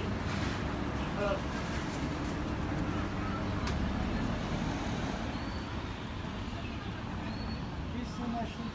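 Street ambience: a car driving slowly past with a low, steady engine and tyre rumble, over faint voices of people nearby.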